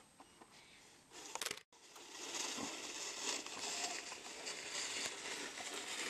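Plastic snow shovel pushed through snow along a driveway: a steady scraping, crackly hiss that sets in about two seconds in, after a brief cut-out. Before it there are only a few faint small crunches.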